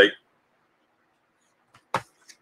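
Near silence after the last word of a man's speech dies away, broken by one short, sharp click near the end.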